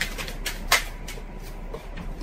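A pause in speech: low room noise over a steady mains hum, with two short clicks, one at the start and one just under a second in.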